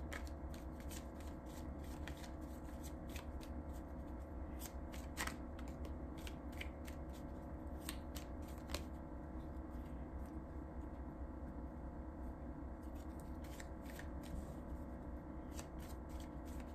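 A tarot deck being shuffled by hand: a quiet run of soft, irregular card clicks throughout, over a steady low hum.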